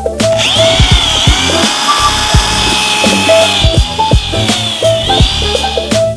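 Background music with a steady beat, over which a small electric motor whines steadily for about five seconds, its pitch dipping slightly a few times.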